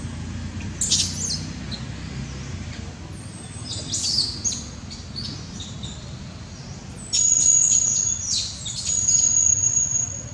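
Wild birds chirping in the trees, with sharp high calls about a second in and around four seconds. A steady high-pitched tone joins about seven seconds in and is the loudest part, with more chirps over it.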